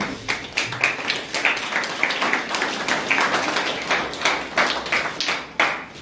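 A room of people clapping, many hands at once, stopping suddenly shortly before the end.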